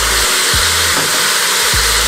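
Chicken sizzling in a stainless stockpot, a steady hiss, under background music with a regular bass beat.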